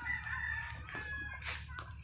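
A rooster crowing faintly, a drawn-out call that steps down in pitch.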